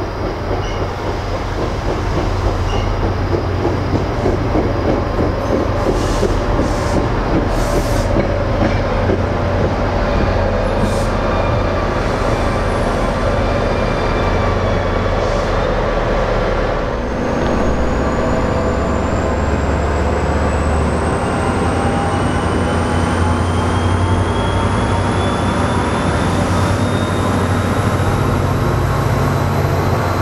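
A passenger train passing close by, with loud, continuous wheel-on-rail noise and a low rumble. In the second half a thin whine rises slowly in pitch.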